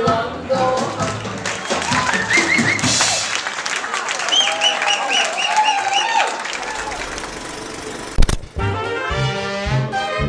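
1920s-style jazz band music with brass and crowd voices under it. A little after eight seconds a single loud thump cuts in, and a trumpet and trombone band passage with a bouncy beat follows.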